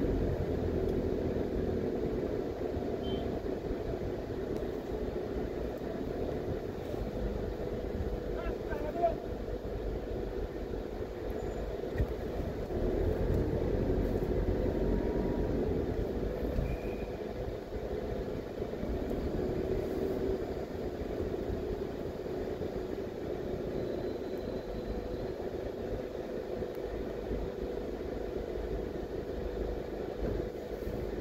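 A car driving slowly in town traffic: steady engine hum and road rumble, with two short knocks partway through.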